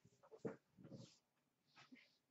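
Near silence: room tone, with a couple of faint, brief sounds about half a second and a second in.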